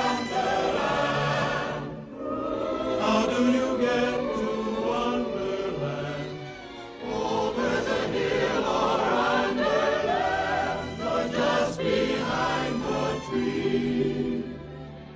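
Background music of a choir singing, the voices wavering with vibrato and the phrases breaking briefly about 2 and 7 seconds in.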